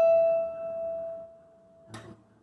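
A single acoustic guitar note left ringing and slowly fading away, almost gone after about a second and a half; a faint pluck comes right at the end.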